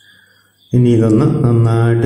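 A man's voice comes in suddenly after a brief quiet gap and holds long, level-pitched, chant-like syllables.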